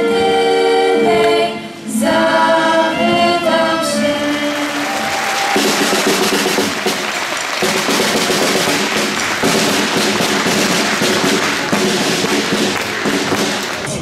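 A choir with a small acoustic instrumental ensemble singing the final long held chords of a Polish Legions song, the last chord ending about four seconds in. Audience applause follows and carries on, fading slightly near the end.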